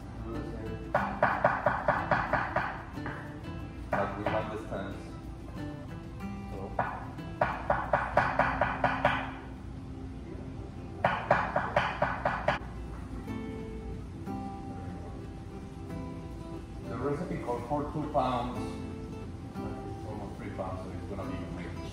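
Rapid knife chopping on a cutting board, in several bursts of about eight quick strokes a second, each burst lasting one to two seconds, over background music and voices.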